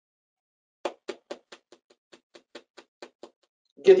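A quick, even series of about a dozen knocks or taps, roughly four a second. The first is the loudest and the rest are fainter.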